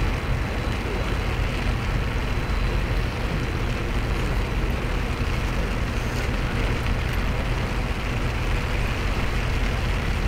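A steady low rumble under an even hiss, unchanging throughout, with no distinct events: outdoor ambient noise in the rain.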